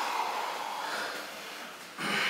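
A sumo wrestler's heavy breathing: a long breathy exhale that starts suddenly and fades over about a second and a half, over a steady hiss of room noise.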